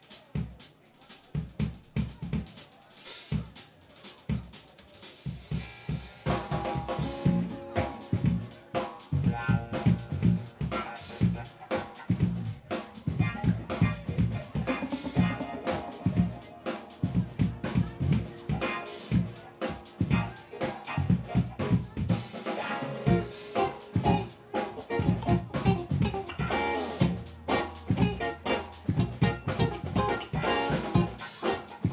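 Live band: a drum kit plays alone for about six seconds, then electric guitars and keyboard come in and the full band plays on.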